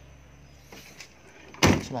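Volkswagen Safari's door slammed shut once, a single loud bang near the end.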